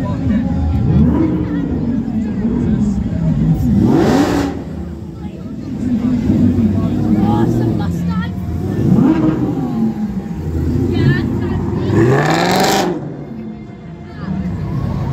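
Parade cars, a Ford Mustang among them, revving their engines as they drive slowly past, the engine note rising and falling several times. Two short, loud bursts stand out, about four seconds in and again near the end.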